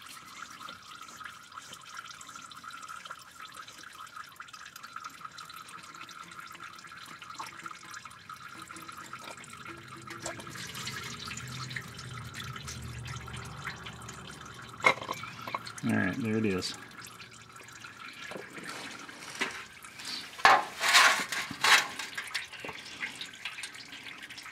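Engine oil pouring out of a loosened cartridge oil filter housing and splashing into a metal drain pan, then dripping. Several sharp clicks and knocks come in the last third as the housing and filter are handled.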